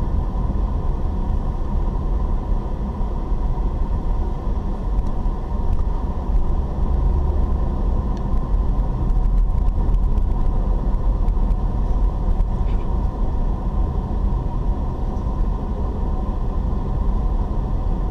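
Car driving along an unpaved dirt road, heard from inside the cabin: a steady low rumble of engine and tyres.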